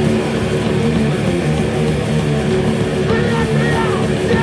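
Thrash metal band playing live: distorted electric guitars and drums at full tilt, loud and dense, with a few high swooping notes rising and falling near the end.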